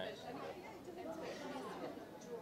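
Background chatter of several people talking at once, softer than a close voice, with no single speaker standing out.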